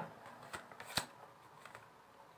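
Tarot cards being shuffled and handled: a few faint card clicks and snaps, the sharpest about a second in.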